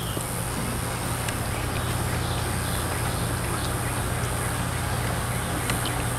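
A steady low mechanical hum, like a motor running, continuing evenly and growing slightly louder about a second in.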